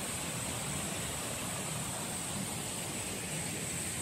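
Mountain stream flowing over rocks: a steady, even rush of water, with a thin steady high hiss above it.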